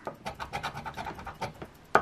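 A coin scraping the latex coating off a scratch-off lottery ticket on a wooden table: a quick run of short rasping strokes, several a second.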